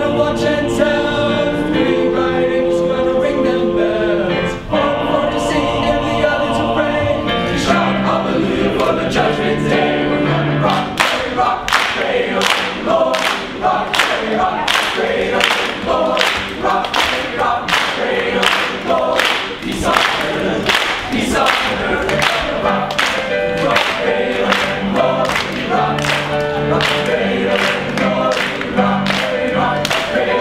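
Male choir singing in harmony: long held chords at first, then from about ten seconds in a rhythmic passage over sharp hand claps about twice a second.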